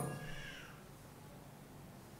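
The last of a man's speaking voice fading out in the first half second, then quiet room tone through the microphone.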